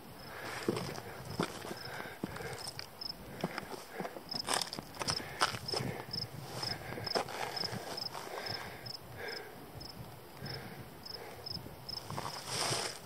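Footsteps and shuffling on bare quartzite rock and dry grass: irregular knocks and scrapes. A faint high ticking repeats about three times a second from a few seconds in.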